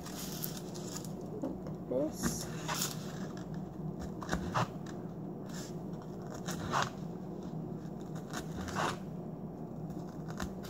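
Scattered small scrapes and taps, about seven in ten seconds at irregular intervals, of strawberries being hulled and cut by hand on a kitchen counter, over a steady low hum.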